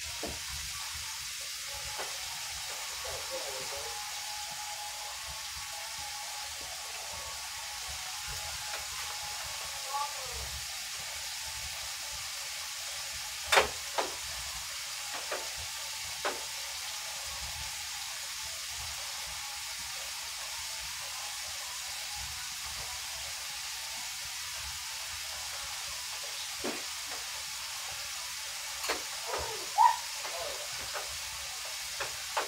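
Electric coil stovetop being wiped down by hand: a few sharp knocks and clatters against the burners, over a steady hiss.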